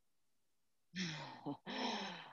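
A woman laughing softly: two short breathy laughs, starting about a second in, after a silence.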